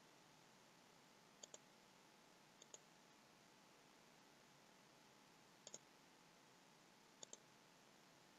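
Faint computer mouse clicks, four quick pairs spread across a few seconds, over near silence: clicking through a list in the software.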